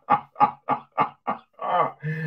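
A man laughing hard: a steady run of short, breathy ha's about three a second, then one longer drawn-out laugh near the end.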